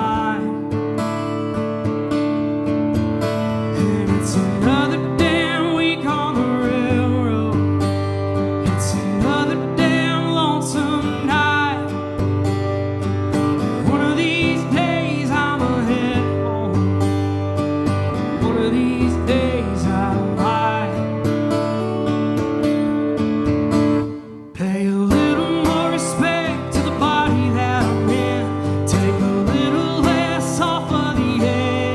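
Acoustic guitar strummed steadily in a country-folk song, with a man's singing voice over it. The playing breaks off for a moment about three-quarters of the way through, then carries on.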